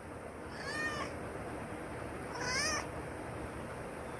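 A domestic cat gives two short, quiet meows with a wavering pitch, about two seconds apart, answering when spoken to.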